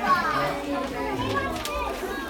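A group of young children chattering and calling out over one another, several small voices overlapping.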